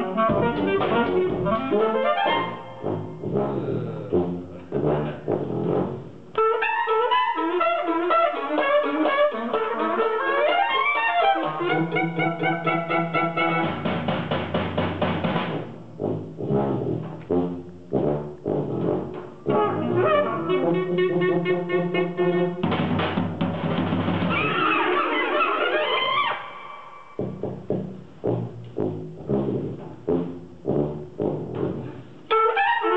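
Live jazz quartet of trumpet, saxophone, tuba and drums playing a tune, the horns running busy lines over the tuba bass and drums. In places, about halfway through and again near the end, the band breaks into short, clipped chords.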